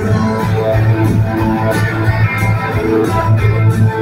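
Rock band playing live: electric guitars over bass and drums in a loud instrumental passage with no singing.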